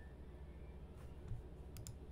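Computer mouse clicking while text is selected and the page scrolled: a faint click about halfway, a soft low thump, then a quick double click near the end, over a steady low hum.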